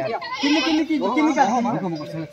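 Several voices calling out together in overlapping, wavering tones, with no break.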